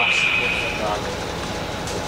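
Steady high-pitched electronic tone that stops just under a second in, over a low steady hum and faint background voices.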